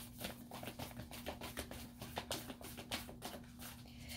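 A deck of tarot cards being shuffled by hand: a quick, faint run of soft card-on-card ticks, several a second.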